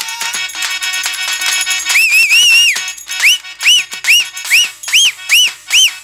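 Stage band music: drum strikes that fall in pitch, joined about two seconds in by a shrill whistle-like tone. The tone wavers briefly, then breaks into short rising-and-falling chirps, about two a second.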